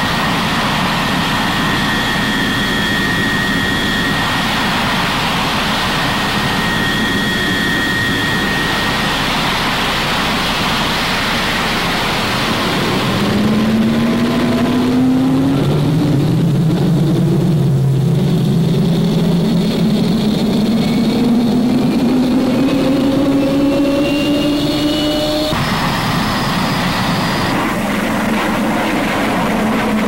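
Jet aircraft noise: a steady rushing sound with a thin high whine at first. From a little under halfway in, lower tones climb slowly in pitch for about twelve seconds, then cut off abruptly.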